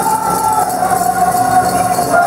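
Powwow drum group singing for the fancy feather dance: voices hold one high, steady note that bends slightly at the start.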